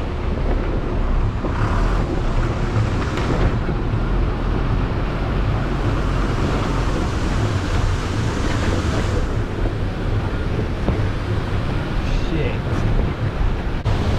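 Steady rumble of a bus engine and road noise, with wind buffeting a microphone held out of the bus window.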